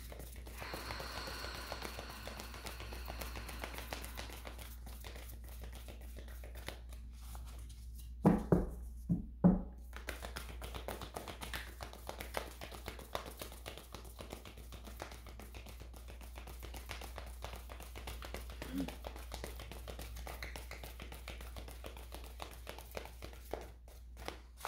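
A deck of tarot cards being shuffled by hand: a continuous run of soft, rapid card clicks and slides. Three louder knocks come about a third of the way through.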